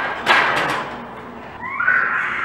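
A loaded barbell set back into the squat stands: a heavy knock, then a quick clatter of several strikes as the bar and plates rattle on the rack hooks. A voice is heard near the end.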